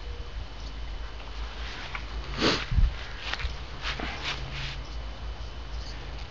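Footsteps and rustling from someone walking with a handheld camera: a few scattered short steps, the strongest about two and a half seconds in, over a steady low rumble.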